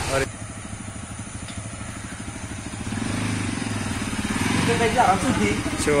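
Motorcycle engine idling with an even low pulsing, growing louder about three seconds in as the bike comes closer.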